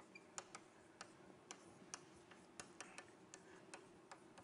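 Near silence: faint room tone with light, irregular ticks, a few a second.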